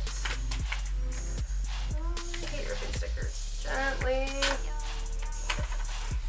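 Music with a steady beat and a singing voice.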